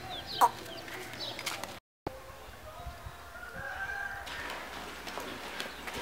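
A rooster crowing faintly in the background: a short sharp cry near the start, then a long call rising in pitch between about two and four seconds in. The sound cuts out completely for a moment around two seconds in.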